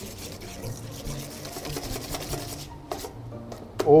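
Wire whisk beating egg yolks and grated cheese in a stainless steel bowl: a fast, rhythmic scraping and tapping of the wires against the metal as the mixture is whipped into a cream.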